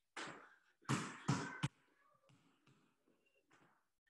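Basketball bounced hard on a wooden floor during crossover dribbles. There is a thud near the start, then three quick bounces about a second in, followed by softer knocks.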